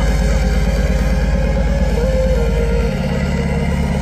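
Electronic dance music played live at high volume over a festival sound system, with a heavy sustained bass and a synth melody; the bass pattern shifts about three seconds in.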